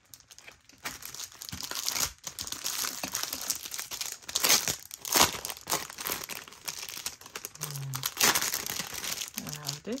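Thin clear plastic wrapping crinkling in loud, irregular bursts as it is handled, starting about a second in. A short bit of voice near the end.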